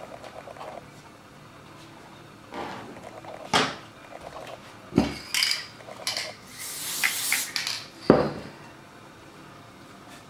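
Hands working fabric and cardboard on a wooden tabletop, with rustling and handling noise. There are three sharp knocks, a few seconds in, about halfway and near the end, and a hissing rustle shortly before the last knock.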